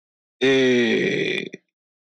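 A man's voice holding one long drawn-out vocal sound for about a second, its pitch sliding slowly down before it trails off.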